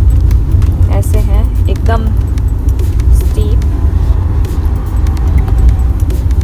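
Steady low rumble of a Hyundai Creta's engine and tyres heard from inside the cabin as it is driven. A few brief voice or music fragments come through in the first couple of seconds.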